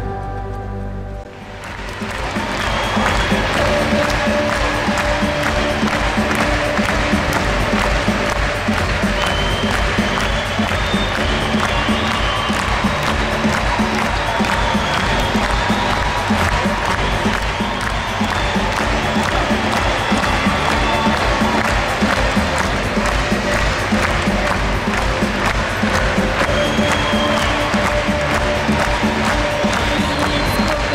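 Applause from a large crowd in a hall, over loud stage music; after a brief dip about a second in, clapping and music run on steadily.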